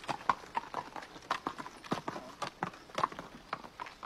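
Horse's hooves clip-clopping on hard ground, a run of irregular sharp knocks several times a second.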